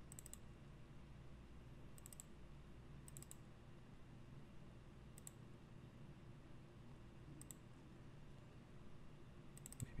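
Faint computer mouse clicks, single and in quick pairs, every second or two over a faint steady hum.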